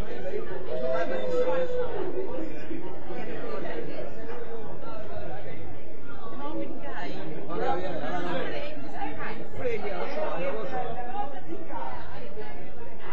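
Overlapping voices: several people chattering at once, with no single clear speaker.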